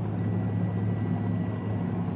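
Boat engine idling as a steady low hum. Over it, a faint steady high electronic tone from a handheld preliminary alcohol screening device starts a moment in and holds while the breath sample is read.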